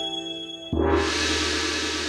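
A gong is struck once, a little under a second in, and rings on steadily.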